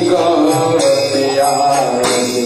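Kirtan: a voice chanting a devotional mantra melody, accompanied by jingling percussion struck at intervals.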